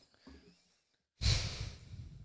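A man's long sigh into a close microphone, starting a little over a second in, loudest at first and then trailing off.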